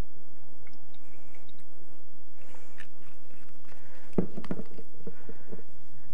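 Faint handling sounds at a kitchen counter, with a short run of small clicks and knocks about four seconds in.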